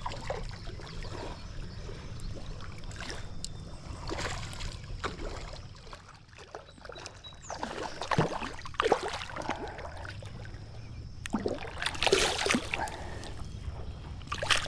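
Water splashing and sloshing as a hooked smallmouth bass thrashes at the surface while it is played in and taken by hand. The splashes come in irregular bursts, the biggest about two-thirds of the way through and again near the end.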